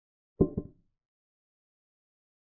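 Chess program's piece-move sound effect: two quick knocks about a fifth of a second apart with a short ringing tone, marking the knight capturing a pawn.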